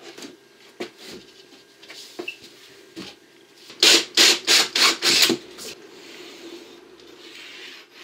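A hand tool rasping in a quick run of about six strokes midway, with lighter scrapes and clicks before and after and a faint steady hum underneath.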